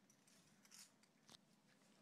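Near silence: room tone, with faint soft hiss and one small click about two-thirds of the way in.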